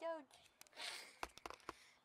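A boy's short falling-pitch call, then a breathy exhale and a few sharp clicks.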